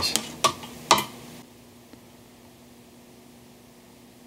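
Three light metallic clicks in the first second as multimeter probe tips touch the speaker cabinet's terminals, then a faint steady hum.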